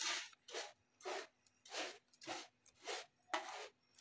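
A cat scratching and digging in freshly poured cat litter in a plastic litter box: about seven short raking strokes, roughly one every half second.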